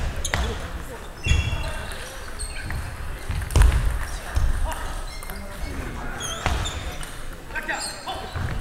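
A table tennis ball bouncing and tapping a few times at irregular intervals between points, not a rally. Short high squeaks come near the end, typical of rubber-soled shoes on a wooden gym floor, over a murmur of voices.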